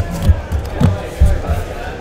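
Cardboard case of boxed trading cards being handled on a table: a few dull, irregular thumps as it is turned and knocked against the tabletop, over background crowd chatter and music.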